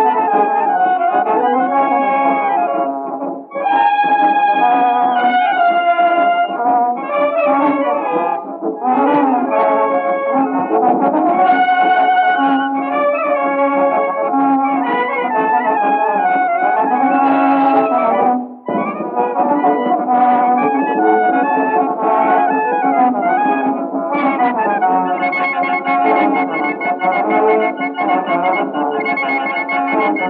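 A brass band playing a dobrado, a Brazilian march, from a 1913 acoustic 78 rpm record: thin, boxy sound with no deep bass and no high treble. The playing breaks off for a moment about three and a half seconds in and again a little past the middle.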